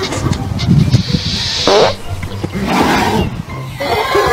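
A horse squealing harshly at another animal it meets nose to nose over a fence: a long loud squeal about a second in that drops sharply in pitch at its end, then a shorter second one.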